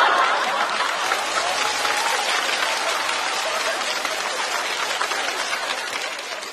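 Studio audience applauding after a punchline, the clapping slowly easing off.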